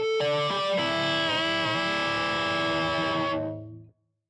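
Electric guitar playing natural harmonics, picked one after another across the D, G and B strings with the open high E, and left to ring together as a chord. About a second in, the whammy bar dips the pitch of the ringing harmonics down and back. The chord fades out near the end.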